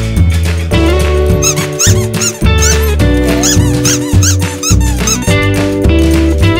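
Background music with a steady bass line, over which a plush squeaky dog toy squeaks many times in quick succession from about a second and a half in until about five seconds in, as the dog chews it.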